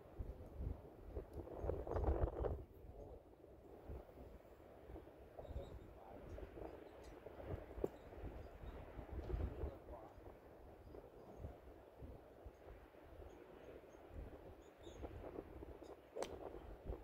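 Faint outdoor ambience with a low wind rumble on the microphone. It gets louder for a moment about two seconds in, and there is a single soft click near the middle.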